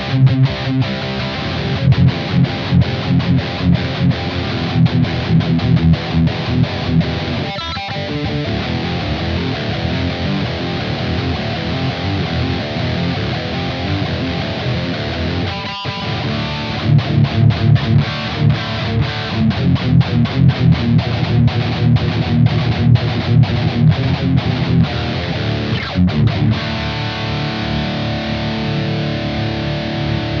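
Heavy distorted electric guitar riffing from an LTD EC256 with passive pickups, played through a Joyo Dark Flame distortion pedal into the clean channel of a Blackstar Amped 2. The riffing is fast and choppy, with brief breaks about eight and sixteen seconds in, and it ends on a chord left ringing for the last few seconds.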